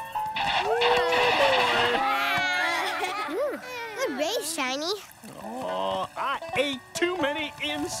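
Children's cartoon character voices cheering and calling out wordlessly, with wide rising and falling pitch, over background music.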